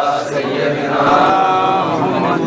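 Arabic salawat on the Prophet Muhammad chanted in a slow, drawn-out melody, with long held notes.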